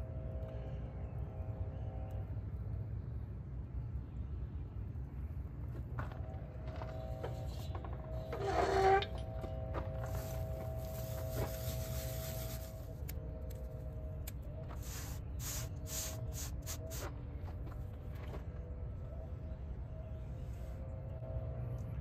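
A smouldering cotton fire roll in a pine-needle tinder bundle being blown into flame, a rushing hiss from about ten to twelve seconds in, followed by a run of sharp crackles as the tinder burns in a small metal stove. A low steady rumble lies under it all, with one short, loud sound about eight seconds in.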